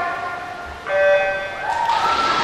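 Electronic start beep of a swimming start system, one steady multi-tone beep about half a second long a little under a second in, signalling the start of a relay race. Crowd cheering swells near the end.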